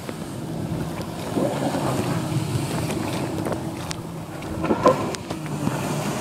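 Watercraft engine running steadily, with rushing water and wind buffeting on the microphone, all muffled by the plastic bag around the phone. A brief louder burst comes a little before the end.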